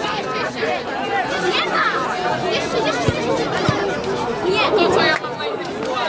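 Several voices overlapping, players on a football pitch shouting and calling to one another, with two dull thumps about halfway through.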